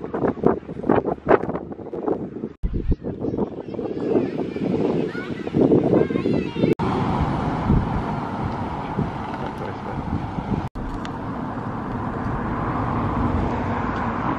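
Wind buffeting the microphone, with indistinct voices in the background. The sound breaks off abruptly three times as the clips change.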